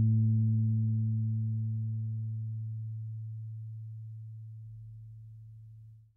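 Electric bass guitar's final low note ringing out and slowly fading away, a single steady low tone that dies off near the end.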